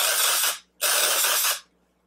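Amika Perk Up aerosol dry shampoo spraying in two hisses of just under a second each, with a short break between.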